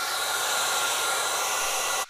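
Handheld hair dryer blowing steadily on a wet acrylic painting: an even hiss of air with a faint whine, which cuts off at the end.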